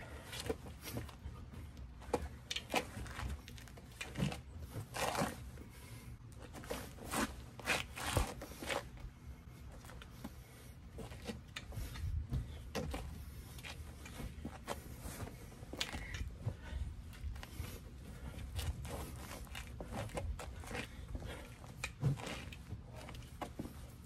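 Movement sounds from stick-fighting drills: a string of short rustles and swishes as a Kali stick is drawn and swung and feet shift on grass and dry leaves, over a low steady rumble.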